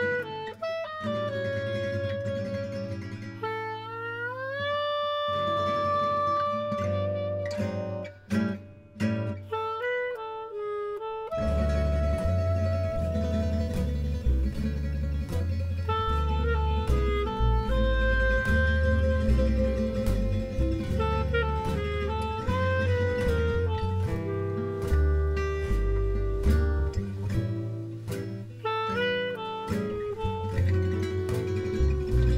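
Gypsy jazz band playing a ballad: a clarinet melody over acoustic guitars, with a held note that slides up about four seconds in. About eleven seconds in, the double bass and guitar rhythm come in fuller and the whole band plays on.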